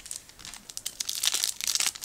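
Foil wrapper of a trading-card pack being torn open and crinkled by hand, a rapid crackle that grows louder through the second half.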